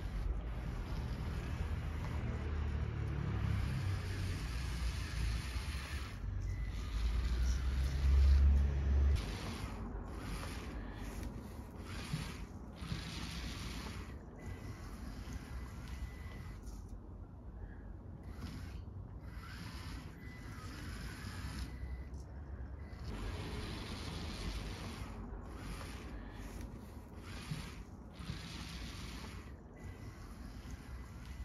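Outdoor background noise: a hiss that swells and fades in waves, with low rumbling wind on the microphone through the first nine seconds, loudest about eight seconds in.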